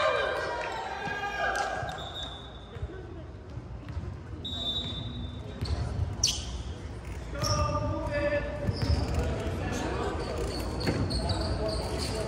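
A volleyball bouncing a few times on a hardwood gym floor, with short high squeaks and players' voices calling out, all echoing in a large hall.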